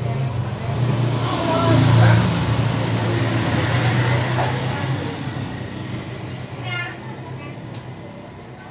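A motor vehicle passing, its engine noise swelling to its loudest about two seconds in, then slowly fading.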